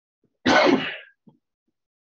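A man clearing his throat once, a single short harsh burst about half a second in.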